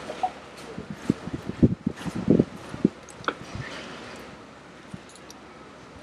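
Wind gusting on the microphone: irregular low rumbles and thumps for the first three seconds or so, then a steadier, quieter rush.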